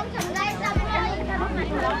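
Children and adults chattering and calling out together in a small crowd.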